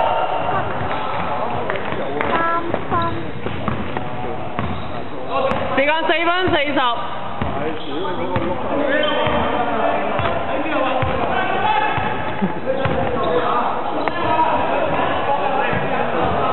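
Basketball being dribbled and bouncing on a wooden sports-hall floor during play, with players' voices calling across the court.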